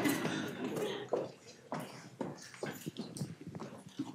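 Audience laughing and talking indistinctly, loudest in the first second, then fading into scattered chatter with a few short knocks.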